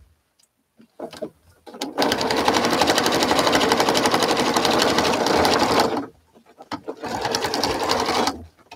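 Domestic electric sewing machine stitching through a quilt top and batting in two runs: rapid, even stitching for about four seconds, a short pause, then it starts again near the end.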